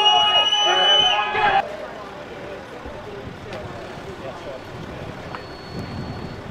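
A loud, steady high tone rings over a crowd of voices and cuts off abruptly about a second and a half in. A quieter murmur of the crowd of protesters and police follows, with a few faint clicks.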